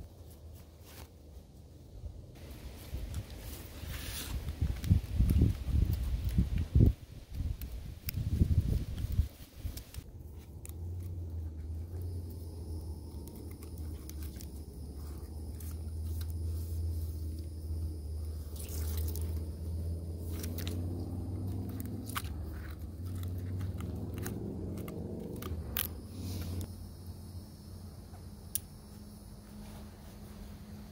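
Close handling of hammock suspension gear: a nylon stuff sack and cord rustling and scraping as the cord is pulled out and wrapped around a pine trunk, with irregular low bumps in the first several seconds and a few sharp clicks later. A low steady hum comes in about ten seconds in and drops away late on.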